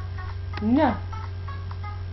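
A voice says the consonant sound /n/ once, rising then falling in pitch, as a pronunciation example. Under it run a steady low electrical hum and short, faint electronic beeps.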